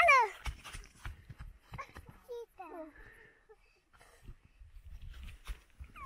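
A high-pitched voice calls out once at the start, its pitch falling, followed by a few faint short vocal sounds and intermittent gusts of wind rumbling on the microphone.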